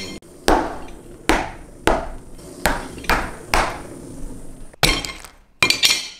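About six sharp whacks on a hard tabletop, roughly half a second apart, then two quick clattering flurries near the end with the ringing clink of a china plate.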